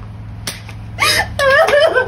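A single sharp slap about half a second in, followed by a woman's voice crying out.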